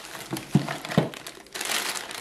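Plastic bag of frozen dinner yeast rolls crinkling as it is picked up and handled, with a few sharp crackles about half a second and a second in and a denser run of crinkling near the end.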